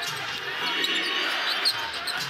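A basketball being dribbled on a hardwood arena floor, with the hum of a large crowd behind it.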